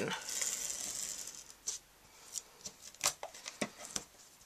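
Fast Fuse adhesive applicator run along the back of a wired ribbon, laying down adhesive with a steady high rasping hiss for about a second and a half, followed by a few short sharp clicks.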